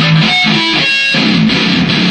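Electric guitar played through an amplifier: loud, sustained chords, changing chord about a second in.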